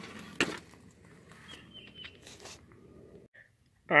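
Faint rustling handling noise with one sharp knock about half a second in; the sound cuts off shortly before the end.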